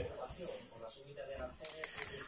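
Faint voices in the background, with a couple of light clicks near the end.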